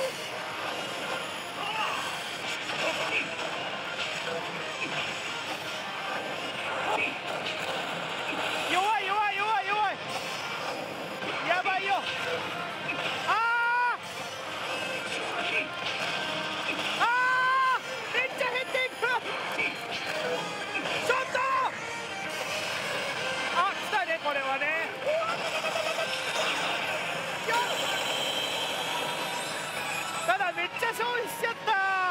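A Hokuto no Ken: Shura no Kuni pachislot machine playing its music and sound effects over the dense, steady din of a pachinko parlor, with voices mixed in. Several swooping electronic tones rise and fall through it, the strongest about halfway through.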